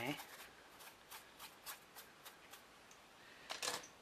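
A soft brush swept in short, light strokes across a chipboard clock face, about four a second, brushing off loose embossing powder; a louder brief rustle comes near the end.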